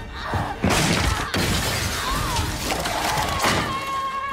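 Film fight sound effects: crashes and shattering of breaking material, with the biggest impact just under a second in and another hard hit near the end, over an orchestral-style score.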